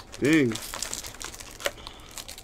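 Foil trading-card pack wrappers crinkling as they are handled and lifted out of a box, with a short voiced sound just after the start.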